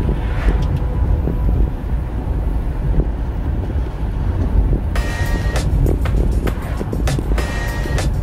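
Low, steady road rumble of a car driving at speed, heard from inside the cabin, with music playing over it. About five seconds in, sharper, brighter hits in the music join.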